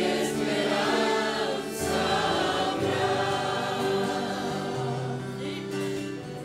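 Congregation singing a worship hymn together with instrumental accompaniment, the bass line shifting to a new note every second or two under the held sung notes.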